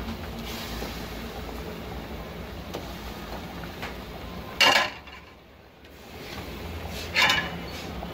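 Two short clatters of metal cookware about two and a half seconds apart, against a low, steady background in the kitchen.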